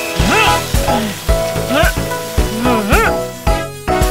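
Water spraying from a cartoon fire hose with a steady hiss, over children's background music with a regular beat and a few short swooping tones.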